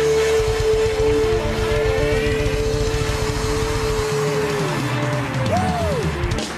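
Live band music with a male singer: one long held note, most likely his voice, that slides down and ends about four and a half seconds in, over driving drums and bass, then a short rising-and-falling note near the end.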